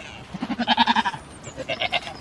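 Goat bleating twice: a longer, quavering bleat about half a second in, then a shorter one near the end.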